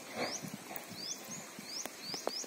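Faint, short rising bird chirps, repeated a few times a second, with one sharp click near the end.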